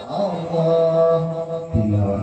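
A man reciting the Quran in melodic tilawah style into a microphone, holding one long note at a steady pitch.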